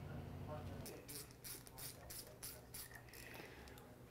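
Faint run of light metallic clicks, about three or four a second, starting about a second in, as the mounting bolts of an LS engine's oil pump are snugged down against the block.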